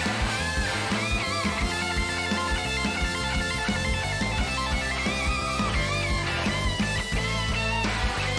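Electric guitar lead on a white SG-style guitar, with bent, sliding notes, over a live blues-rock band.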